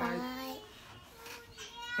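A young child's high, drawn-out voice: a long sweeping note at the start, then a thinner steady high note growing toward the end.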